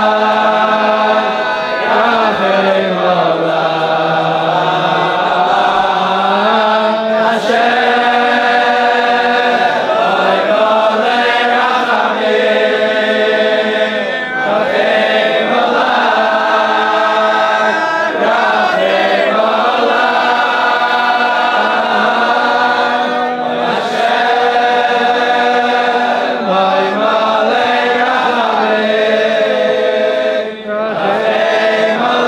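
A large group of men singing a slow, wordless-sounding melody together in unison, with long held notes that move in steps and no break.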